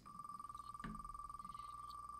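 Faint rapid ticking from an online name-picker wheel spinning, over one steady high tone, with a single click about a second in.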